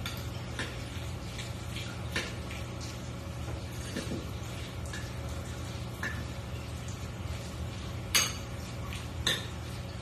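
A metal utensil stirring macaroni and cheese in a ceramic bowl: soft scraping and light clinks against the bowl, with a few sharper clinks about two seconds in and twice near the end. A steady low hum runs underneath.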